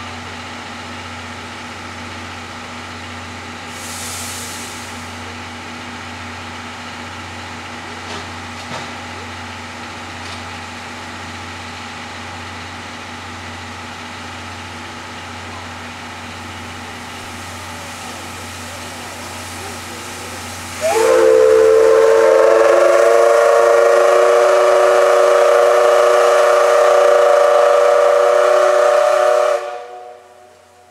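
D51 steam locomotive standing with a steady hiss and hum, with a short burst of steam hiss about four seconds in. About twenty seconds in, its steam whistle sounds one long, loud, chord-like blast of about nine seconds, the signal before the train starts away.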